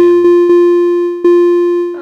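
Electronic playback tone of a music notation program sounding a triplet-and-quarter-note rhythm on one pitch: two quick triplet notes, a quarter note, then a last quarter note about a second in, held and stopping just before the end.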